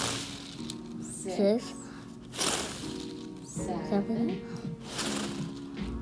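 A child blowing hard at a toy pinwheel, three long breathy puffs about two and a half seconds apart: the deep-breathing (hyperventilation) part of an EEG. Steady music tones and short bits of voice sound between the breaths.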